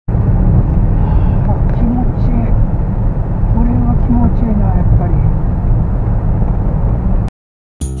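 Heavy wind rumble on the microphone and road noise in the open cockpit of a Honda S660 driving with its roof off, with a man's voice briefly heard over it. The sound cuts off suddenly about seven seconds in, and guitar music starts just before the end.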